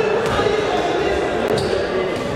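Futsal game sound in an echoing sports hall: indistinct voices of players and onlookers, with two ball thuds on the wooden floor, about a quarter second in and near the end.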